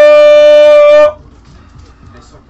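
A loud, steady horn blast: one held pitched tone that cuts off abruptly about a second in.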